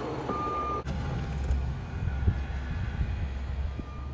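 Semi truck's diesel engine running with a steady low rumble, and a single back-up alarm beep about half a second in as the truck reverses. A sharp click follows just before the one-second mark.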